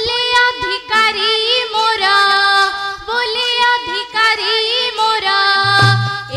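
A young girl singing an Odia folk song in long held, ornamented phrases that bend in pitch. A drum comes back in near the end.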